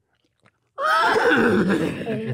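A person's vocal impression of a horse whinnying, meant as a horse on fire: a loud, rough, strained neigh that starts about three-quarters of a second in.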